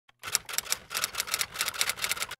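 Typewriter keystroke sound effect: a quick, uneven run of sharp key clicks, about eight a second.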